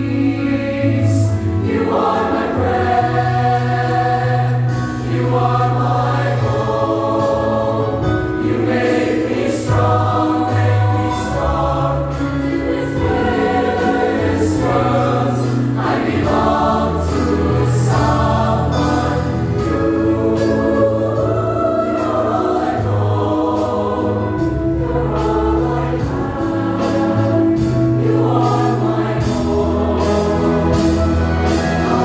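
Mixed show choir singing in harmony over accompaniment, with long held low bass notes that step from pitch to pitch under the voices.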